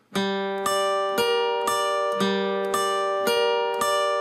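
Steel-string acoustic guitar picking a slow arpeggio, one note about every half second, each note left ringing. An open G bass note is followed by the high E and B strings, fretted at the 10th fret on E and the 11th on B, and the four-note pattern is played twice.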